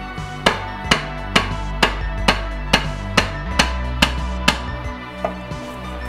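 Rubber mallet striking a wooden block to drive a rear main seal into an engine timing cover: about ten evenly spaced blows, a little over two a second, then a lighter tap, over steady background music.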